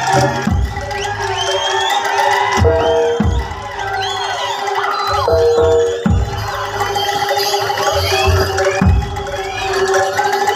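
Live traditional Javanese ensemble music, with a steady held tone and irregular low drum strokes, over a crowd shouting and cheering.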